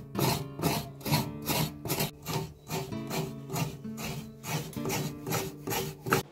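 Fresh coconut being grated on a hand coconut scraper into a steel bowl: rhythmic rasping strokes, about two a second, over background guitar music.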